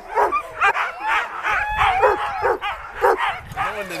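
Harnessed sled dogs barking and yipping over and over, about two to three calls a second.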